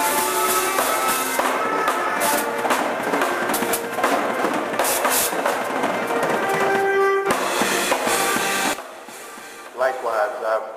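A live band playing: drum kit with cymbal hits under guitar and held keyboard notes. The music stops abruptly about nine seconds in.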